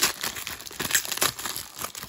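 Foil wrapper of a 1995 Topps Embossed baseball card pack being torn open and peeled back by hand, crinkling and tearing in short irregular crackles.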